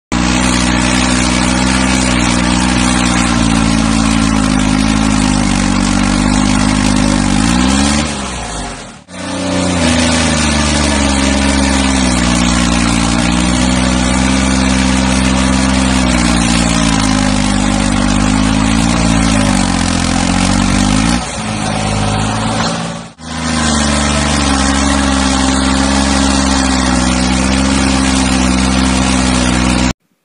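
New Holland 3630 tractor's diesel engine running hard, pulling a heavily loaded trolley. Its steady note sags in pitch and fades twice, about eight and twenty-one seconds in, each time breaking off briefly before running again.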